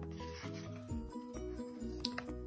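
A page of a hardcover picture book being turned by hand, the paper rubbing as it slides over, with soft background music under it.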